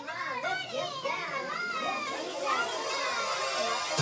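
A crowd of children's voices chattering and calling out all at once, with no beat under them, during a break in a recorded children's song.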